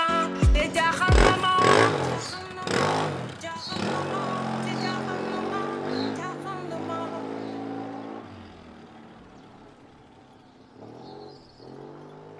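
A motorcycle engine revs as the bike pulls away, then fades as it rides off, with background music over it.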